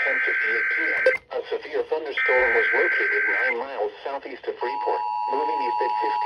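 Emergency Alert System header from a radio relaying a severe thunderstorm warning: two screechy digital data bursts about a second long, a second apart, over a weather radio's synthesized voice reading the warning. About four and a half seconds in, the steady two-tone EAS attention signal starts and holds to the end.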